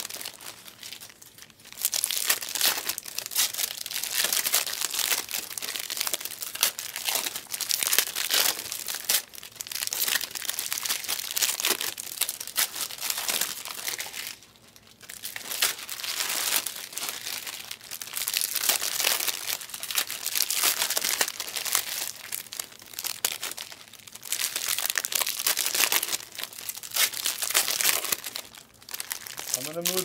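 Trading-card pack foil wrappers being torn open and crumpled, crinkling in stretches with brief pauses about halfway and near the end.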